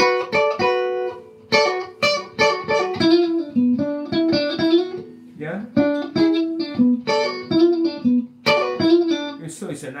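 Stratocaster-style electric guitar playing a blues lick in double stops, two strings sounded together, in a few short phrases with brief gaps between them.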